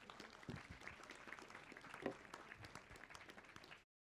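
Faint audience applause, many hands clapping in a dense, irregular patter, with a brief louder sound about two seconds in; it cuts off just before the end.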